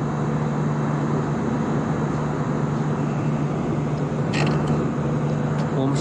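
Steady airliner cabin noise in flight: the even drone of the jet engines and rushing air with a low constant hum. A brief sharp sound cuts in about four seconds in.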